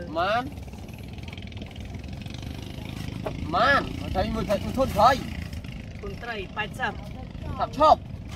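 People speaking in short phrases, with pauses between them, over a steady low rumble.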